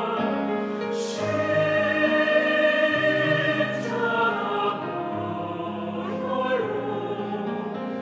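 Mixed choir singing a Korean church anthem in parts, with piano accompaniment.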